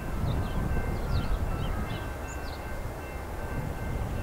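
Low, steady rumble of a distant diesel freight train with four locomotives approaching, with birds chirping over it.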